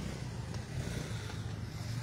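Steady low outdoor background rumble with a faint hiss above it, no distinct events.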